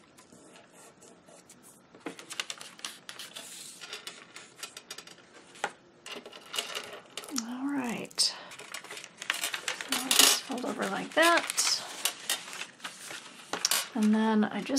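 Paper being handled and rustled, with many small clicks and taps that start about two seconds in, as a sewn paper journal signature is pressed, moved and laid out on a craft mat.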